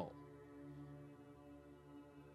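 Faint background music: a steady drone of several held tones.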